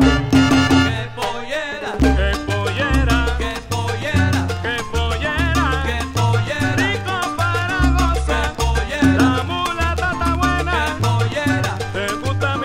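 Salsa band playing an instrumental passage with no vocals: a repeating bass line and percussion under a lead melody that bends in pitch, from a 1970s vinyl LP recording.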